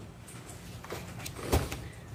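Low room noise with a few faint clicks, then one sharp knock about one and a half seconds in.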